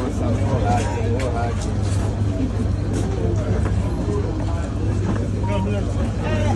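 Crowd chatter: several people talking at once over a steady low hum.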